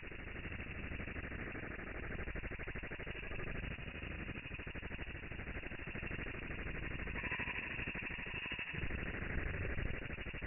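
Domestic ultrasonic cleaner's buzz and water cavitation noise, played back slowed eight times, so it comes out as a steady, low, rattling drone.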